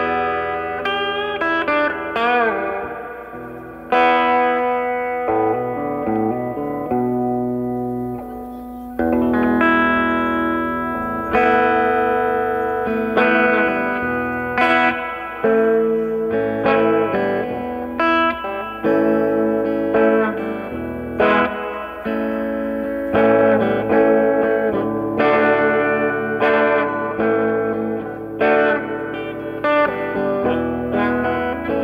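Electric guitar, an Epiphone Les Paul Classic, played through effect pedals and an old radio used as an amplifier. It plays a slow improvised line of ringing single notes and chords, with a note bent up and down about two seconds in.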